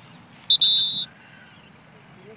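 A loud, steady, high-pitched whistle: one held note about half a second long, starting about half a second in and cutting off sharply.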